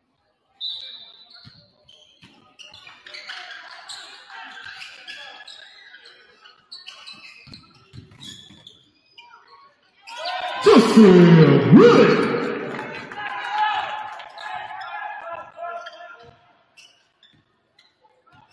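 Gym noise during a basketball game: short high sneaker squeaks and a ball bouncing on the hardwood under scattered voices. About ten seconds in, the crowd breaks into loud shouting for a few seconds, then it dies down.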